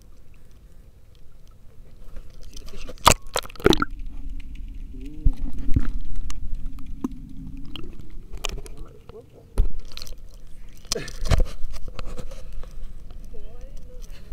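Camera handling noise in a plastic kayak: a low rumble broken by several sharp knocks as the phone is moved around and bumps the hull, with a laugh near the end.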